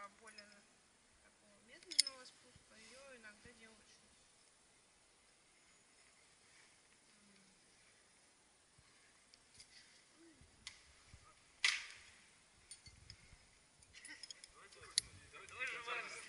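Metal climbing hardware being handled on a harness: carabiner gates and an aluminium descender clicking and clinking. There are a few sharp clicks, about two seconds in, around three quarters of the way through (the loudest) and near the end, with quiet handling between.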